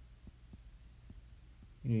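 Faint steady low hum with light, rapid ticks from a stylus writing on a tablet. A man's voice starts near the end.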